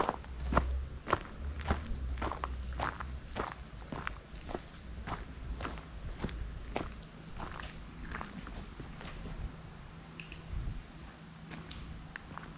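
Footsteps of a person walking on a dirt-and-gravel track at about two steps a second, growing fainter in the last few seconds.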